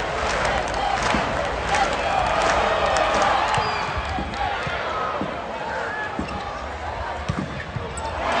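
Volleyball rally in an arena: several sharp smacks of the ball being served and played, over a steady crowd hubbub of chatter and calls.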